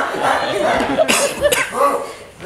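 Wordless vocal noises and laughter from several young voices, with a sharp breathy, cough-like burst about a second in.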